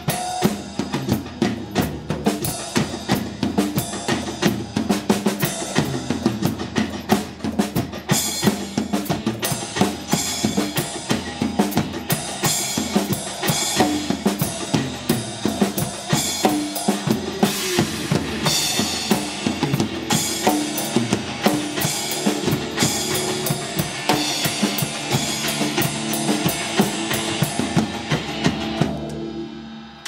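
Acoustic drum kit played hard and fast, with bass drum, metal-shell snare and cymbals, along with a pop song's backing track. Both drumming and music stop just before the end.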